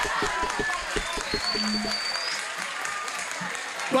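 Rap-battle crowd cheering, shouting and applauding at the end of a verse, with the rapid beat or clapping running under it for the first second and a half and then stopping.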